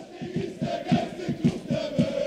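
Football crowd and players chanting together, a held sung note over a fast, even beat.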